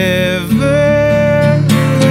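Folk song played on acoustic guitar, with a long held wordless vocal note over the guitar.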